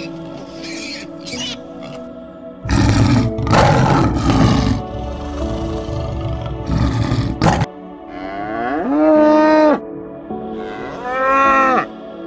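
A lion roars for about two seconds and then gives a shorter roar. Near the end, two long cow moos follow, each rising, holding and then falling, over steady background music.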